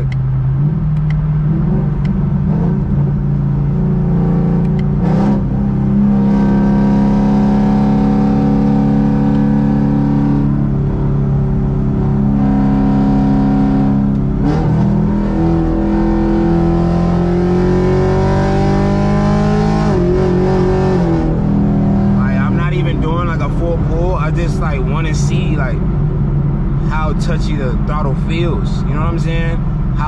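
Chevrolet Camaro SS V8 heard from inside the cabin, droning steadily at freeway cruise, then rising in pitch for about five seconds as the throttle is opened before dropping back about two-thirds of the way through. A throttle-response check on a freshly flashed tune revision, which the driver finds responsive.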